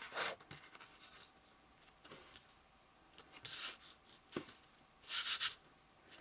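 Hands rubbing and pressing a piece of cardboard flat onto glued paper: three short scuffing rubs, near the start, about halfway and near the end, with a light tap just before the last.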